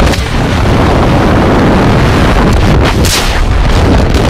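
Freefall wind roaring and buffeting the camera microphone as the tandem pair drops from the plane, a loud, unbroken rumbling rush.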